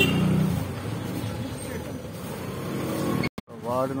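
A motor scooter and a small car passing close by, their engines loudest at the very start and fading within the first half second, then softer street traffic. The sound cuts off suddenly near the end and a man starts speaking.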